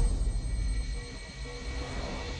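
A deep, low rumble dies away in a film trailer's sound mix, fading over the first second or so. Faint held music notes sound above it.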